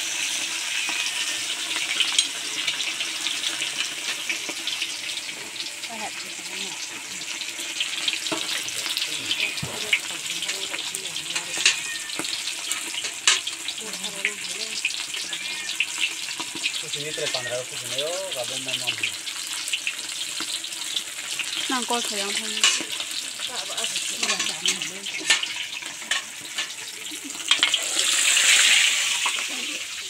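Oil sizzling steadily as food deep-fries in a large iron kadai over a wood fire, with occasional sharp clicks. A louder rush of hiss comes near the end.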